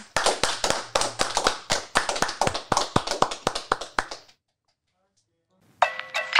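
Hands clapping in quick, irregular applause for about four seconds, then stopping. After a short silence, music comes in near the end.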